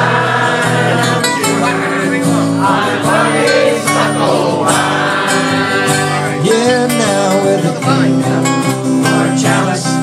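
Live band music: a strummed acoustic guitar and a cigar box guitar playing, with several voices singing along.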